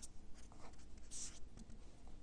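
Felt-tip marker writing on a sheet of paper: faint scratching strokes, with one sharper stroke a little over a second in.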